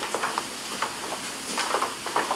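Footsteps on a hardwood floor with handheld-camera handling noise: a few irregular soft knocks over a steady faint hiss.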